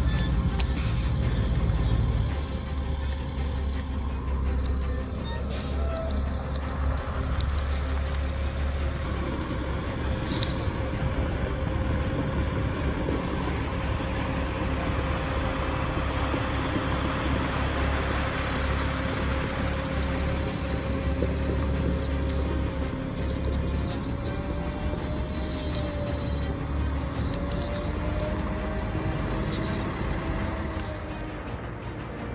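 Eight-wheeled armored vehicle's engine running with a steady low rumble and a steady whine above it; the whine wavers and rises slightly near the end.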